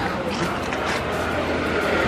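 City street noise: a steady hiss of traffic, with voices in the background.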